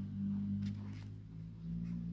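Pages of a paperback manual being turned, giving a few faint rustles over a low steady hum.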